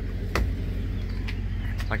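Semi-truck diesel engine idling with a steady low rumble, and a single sharp click about a third of a second in.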